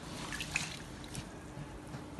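A crepe bandage being soaked by hand in a stainless-steel bowl of water: light splashing and dripping.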